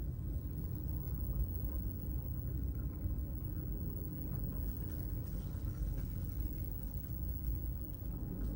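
Steady low rumble of a car's engine and tyres heard from inside the cabin as the car rolls slowly along.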